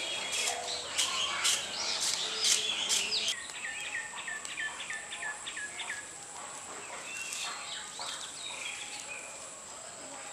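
Coconut-leaf-rib broom sweeping bare earth in short swishing strokes, about two a second, for the first three seconds. Then a bird calls a quick series of short falling chirps, about four a second, followed by scattered softer chirps.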